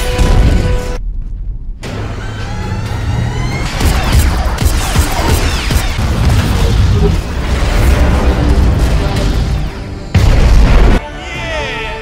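Film battle soundtrack: orchestral score mixed with explosions and booms, with sweeping high tones. A very loud, deep boom comes about ten seconds in and lasts about a second.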